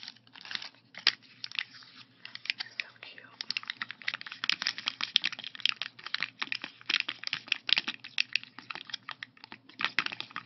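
Fingers and nails crinkling and tapping a sheet of puffy 3D stickers on its clear plastic backing: a dense, continuous run of small crackles and clicks.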